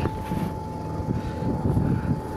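A low, steady drone of a running vehicle engine, with a thin steady whine running over it.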